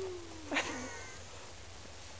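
A young child's closed-mouth "mmm" hum sliding down in pitch while eating snow, followed about half a second in by a short, louder, higher-pitched vocal sound that falls away.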